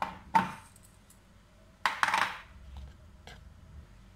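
Kitchen things handled on a table: a sharp clink with a short ring as a ceramic bowl is set down, then a longer rattling scrape about two seconds in and a small click near the end.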